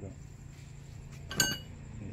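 One sharp metallic clink with a short ring about a second and a half in: metal striking metal at a Honda Mobilio's front stabilizer link as it is handled. A steady high chirring of crickets runs underneath.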